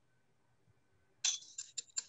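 A metal spoon tapping a small mesh sieve to shake powdered sugar through it: after a quiet first second, about four sharp metallic clinks come in the last second.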